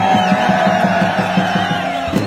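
A male voice holds one long final note of an Arabic revolutionary song over a quick, even pulsing beat. The note fades near the end.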